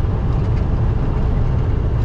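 Steady drone of a semi-truck at highway cruising speed, heard inside the cab: a constant low engine and road rumble with a faint hiss of wind and tyres above it.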